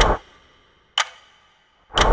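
Countdown clock tick sound effect: one sharp tick with a short ring about a second in and another at the end, one per second, in a pause after the music cuts off.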